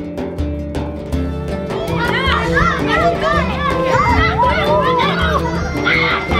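Many children's voices shouting and calling at play, overlapping, coming in about two seconds in over background music with low repeating bass notes.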